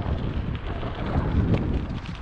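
Wind buffeting the microphone over the rumble and rattle of a mountain bike riding fast down a dirt trail, tyres running over loose stones, with a few light clicks and knocks from the bike.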